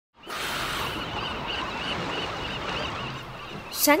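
A flock of seabirds calling over and over at once, above a steady rush of sea and wind noise.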